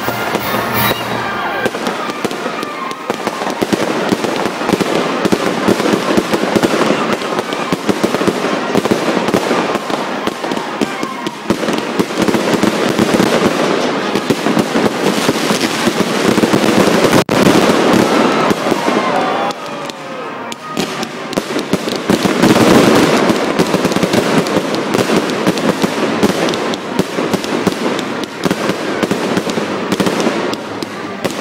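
Fireworks display: aerial shells bursting overhead with a dense, continuous crackle and rapid bangs, loudest about midway and again a little past two-thirds of the way through.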